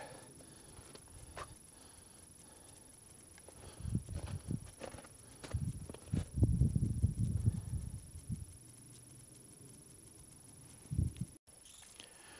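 Muffled low thumps and rumble of a person moving about in snow with the camera, coming in uneven clusters from about four to eight and a half seconds in and once more near eleven seconds.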